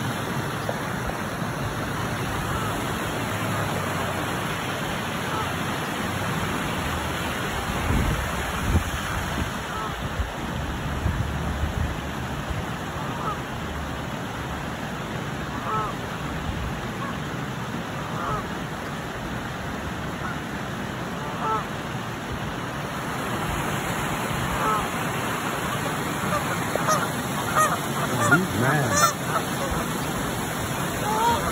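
Canada geese honking: a few scattered single calls, then a run of louder honks close by near the end.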